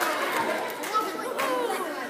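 Crowd chatter: many voices talking over one another at once, with a short sharp click about a second and a half in.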